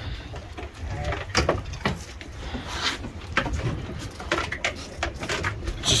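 Deck and water noise on an offshore fishing boat: a low steady rumble under irregular knocks and splashy noises.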